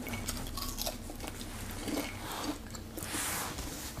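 A person biting into and chewing a strip of crisp maple candied bacon, with scattered small clicks.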